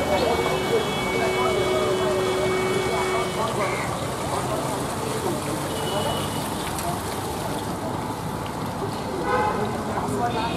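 Street ambience of people's voices and road traffic. A long steady tone runs for the first three and a half seconds or so.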